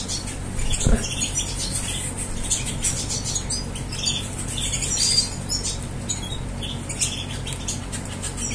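Small cage birds, canaries and red siskin hybrids, giving short scattered chirps and calls. There is a single thump about a second in, and a steady low hum throughout.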